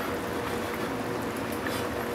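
Pot of pollack roe soup boiling on a stove at medium heat, a steady hiss of boiling liquid.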